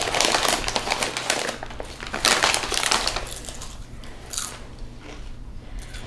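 A potato-chip bag crinkling as it is handled, mixed with the crunching of chips being bitten and chewed. The crackling is dense for the first three seconds or so, then thins out.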